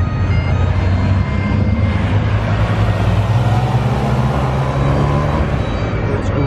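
Road traffic passing close by: a vehicle's engine note rising slowly while tyre and road noise swells and fades around the middle.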